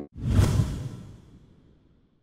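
A whoosh transition sound effect: one noisy swell that comes up quickly, peaks about half a second in, and fades away over the next second.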